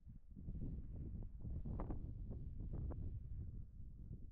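Wind buffeting the microphone: an uneven low rumble that swells about half a second in and eases off near the end, with a few faint crackles.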